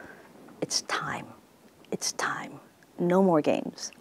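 A person speaking softly in a whisper, then a short phrase in a normal voice about three seconds in.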